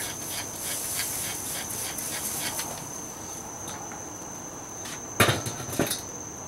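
Rapid squirts from a trigger spray bottle in the first half, then the enamelled steel lid of a Weber Smokey Mountain smoker set down with two clanks near the end. Insects drone at a steady high pitch throughout.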